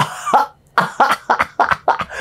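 A man laughing: a breathy burst, a short pause, then a quick run of short breathy laughs about a second in.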